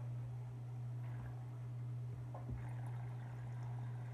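Quiet room tone: a steady low hum, with a few faint soft clicks.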